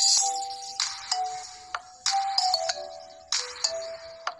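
Background music: a bright electronic melody of short held notes over a recurring percussive beat.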